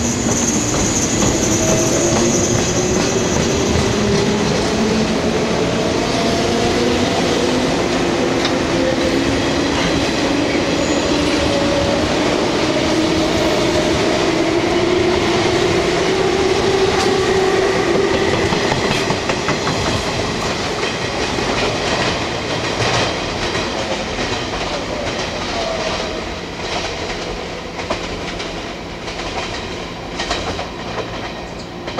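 A JNR 489 series electric multiple unit runs past close by. Its motors whine in tones that rise slowly in pitch as it gathers speed. Over the last ten seconds or so wheels click over the rail joints and the sound fades as the train draws away.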